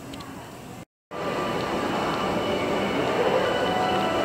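Quiet store ambience that cuts out abruptly about a second in, then a louder, steady din of a covered shopping street, with faint tones in it.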